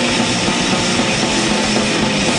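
Crust / d-beat hardcore punk played by a full band: distorted bass, guitar and drums in a dense, steady wall of sound that crashed in a moment before.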